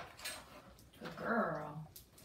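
A large dog giving one low, drawn-out whine about a second in, lasting just under a second and dropping slightly in pitch.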